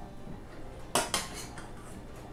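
Metal serving spoon clinking against a stainless steel saucepan as green beans are scooped out: two sharp clinks about a second in, then a few faint taps.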